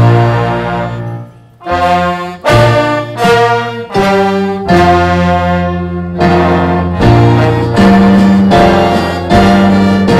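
A jazz band's horns play a national anthem in slow, held chords, with a short break between phrases about a second and a half in.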